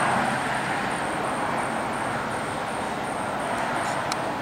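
Road traffic noise: tyres of cars on the street alongside, a steady rushing sound that slowly fades.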